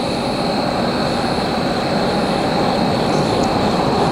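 Steady roar of distant engine noise, growing slightly louder, with a faint high steady tone running under it.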